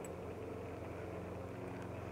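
A machine's steady low hum, made of several held tones.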